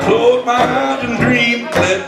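Live music: a man singing while playing a Yamaha electric keyboard, with a wavering held note about halfway through.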